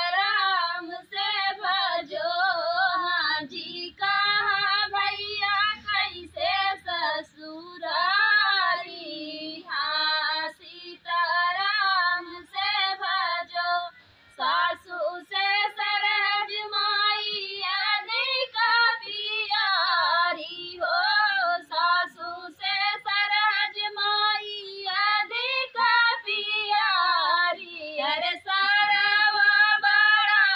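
Two women singing an Awadhi folk song (lokgeet) together, unaccompanied, in high voices with wavering, ornamented phrases separated by short breaths.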